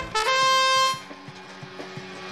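Match start signal for driver control: a single held tone, under a second long, about a fifth of a second in. Quieter background music with a steady beat follows.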